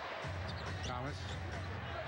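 Basketball game broadcast audio: arena crowd noise and court sounds, the ball bouncing on the hardwood and sneakers squeaking, under a commentator calling the play.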